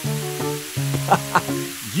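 Background music with held notes and a couple of short notes a little after a second in, over a steady hiss of water spraying from a garden hose. The hiss cuts off at the end.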